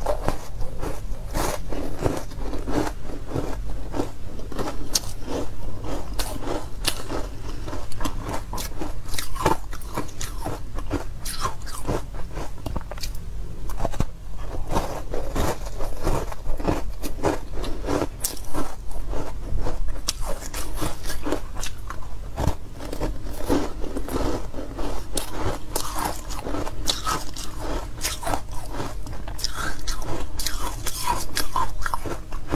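Ice chunks coated in powder being bitten and chewed, a dense run of crisp crunches and crackles.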